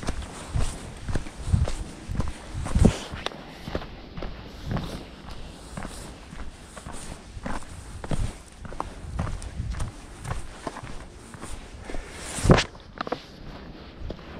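A hiker's footsteps on a dry, leaf-littered, stony mountain trail, an irregular run of steps scuffing through fallen leaves and onto rock. There is one sharper, louder knock near the end.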